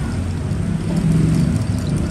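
Low, steady rumble of a motor vehicle's engine running close by, growing a little louder about a second in.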